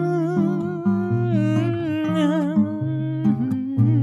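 Acoustic guitar playing a bossa nova accompaniment, with low plucked bass notes under chords, and a wordless hummed melody wavering with vibrato over it.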